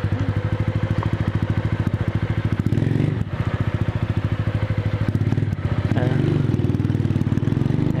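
Motorcycle engine idling with a steady, rapid pulse while stopped at a red light. Near the end it grows louder as the rider opens the throttle to pull away on the green.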